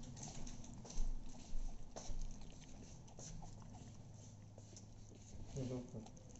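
Corgi puppy gnawing on a raw chicken leg: irregular sharp clicking bites and wet chewing, the strongest about a second and two seconds in.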